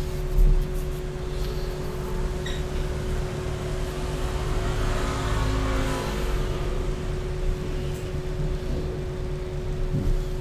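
Steady low hum and rumble of background noise, with a broad swell of noise that builds and fades about halfway through.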